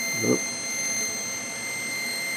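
A steady high-pitched electrical whine with even overtones holds one pitch over a steady hiss, with a short "oop" from a man just after the start.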